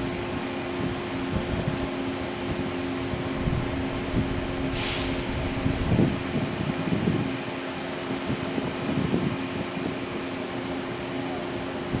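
Steady mechanical hum holding two low tones, from a moored passenger boat's idling machinery, with wind gusting on the microphone. A brief hiss about five seconds in.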